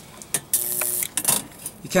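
Homemade spot welder firing on thin sheet metal: a click, then about half a second of sizzling crackle over a steady hum as the weld spot forms, with a shorter second burst just after.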